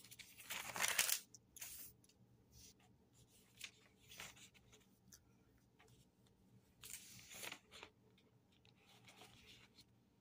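Thin Bible pages being leafed through by hand: a series of soft paper rustles, the longest just after the start and again about seven seconds in.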